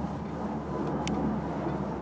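Steady low engine drone, with a single short click about a second in.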